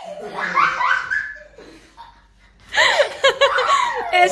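People laughing in two bouts: a run of laughter in the first second and a half, then louder laughter near the end after a short lull.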